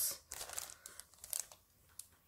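Clear plastic packaging of sticker sheets crinkling in several short, faint rustles as the sheets are handled, dying away after about a second and a half.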